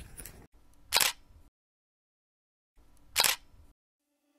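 Two camera-shutter click sound effects, about two seconds apart, with dead silence between them.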